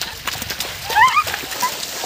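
Several pairs of bare feet running and splashing through shallow river water in quick, irregular slaps. There are a couple of short rising cries about halfway through.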